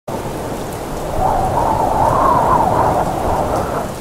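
Rain with thunder: a dense, steady patter with a rumbling swell that builds about a second in and eases toward the end.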